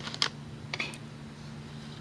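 A few light clicks of rubber bands and fingertips on the plastic pegs of a Rainbow Loom as bands are stretched over them, the loudest about a quarter second in.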